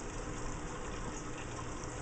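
Aquarium filter outlet pouring a steady stream of water into shallow tank water, a continuous splashing trickle.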